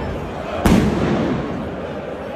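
A single loud firecracker bang about two-thirds of a second in, over the steady noise of a large football crowd.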